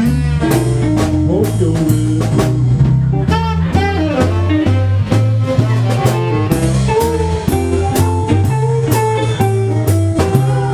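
Live blues band playing: an electric guitar lead with bent notes over a walking bass line and a steady drum kit beat with cymbals.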